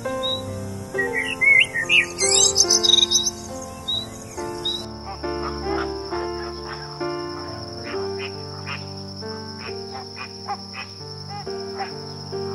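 Small songbird twittering in quick bursts of high chirps for the first four seconds or so, then short scattered calls, all over background music with steady piano-like notes.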